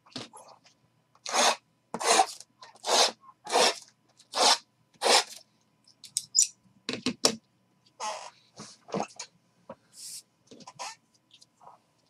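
Cardboard card-box packaging being handled and opened by hand: a run of six short scraping, tearing noises about 0.7 s apart, then softer, irregular rustles and scuffs.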